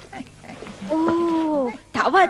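A person voicing a cat's meow: one drawn-out call, held steady and then falling in pitch at the end.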